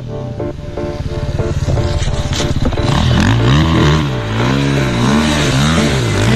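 A small supermoto-style pit bike's engine runs as it comes closer. From about three seconds in it is revved up and down repeatedly.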